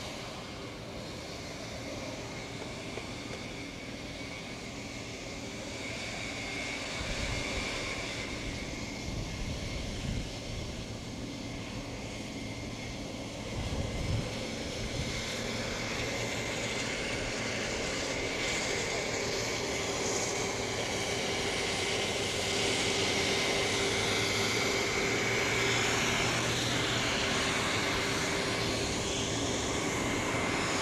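Jet engines of a four-engined TWA jetliner running at taxi power: a steady rushing whine with a high held tone, growing louder in the second half as the plane rolls past.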